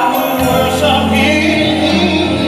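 Gospel music playing for the dance, with a choir singing. A low bass note comes in about a third of a second in and holds under the voices.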